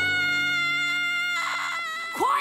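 A cartoon girl's voice letting out one long, high, wordless wail of anguish. The pitch climbs into it and then holds steady, and it cuts off near the end.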